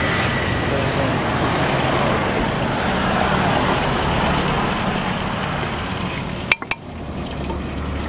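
Steady roadway traffic noise from passing cars and motorbikes. A sharp click and a brief dropout come about six and a half seconds in.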